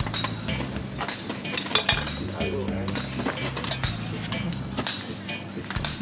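Metal tongs clinking against a charcoal grill's wire rack and skewers in short, irregular clicks, over steady background music with faint speech.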